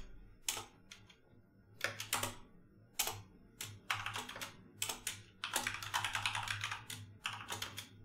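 Computer keyboard typing in short, irregular bursts of keystrokes separated by brief pauses.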